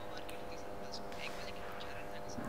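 Quiet background of a call's audio line: a steady low hum over hiss, with a few faint indistinct sounds.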